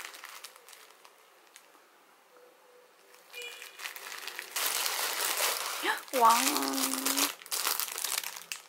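Kraft paper wrapping crinkling and rustling as it is pulled open by hand, starting about halfway in after a quiet stretch.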